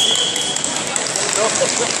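A referee's whistle blown once: a short, steady high note lasting under a second, over the chatter and hubbub of a crowded wrestling hall.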